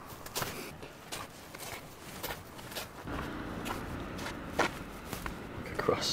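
Footsteps of a person walking on a snowy pavement, roughly two steps a second. From about halfway a vehicle engine's steady low hum joins in.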